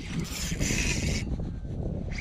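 Wind rumbling on the microphone, with a hiss that comes and goes from a Shimano Vanford spinning reel being handled and cranked.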